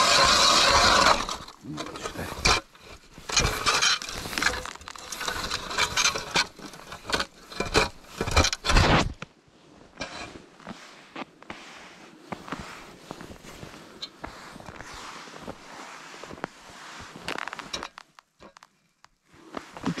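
Hand ice auger cutting through thin first ice: a dense grinding scrape for about the first second, then irregular scraping and crunching strokes of blades and ice chips for several seconds. After that, quieter scattered crunches and ticks on the ice.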